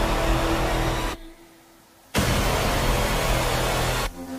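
A loud, even rushing noise over a low steady hum. It cuts out abruptly about a second in and comes back suddenly about a second later.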